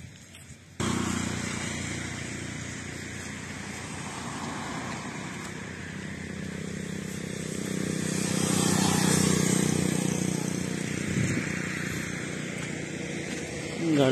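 Motor traffic on a paved road: a motorcycle engine passing by, growing louder to a peak around the middle and then fading, over a steady hum of vehicles. The sound starts abruptly about a second in.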